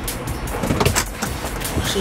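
Engine and road rumble inside the cabin of a moving vehicle, steady and low, with background music over it.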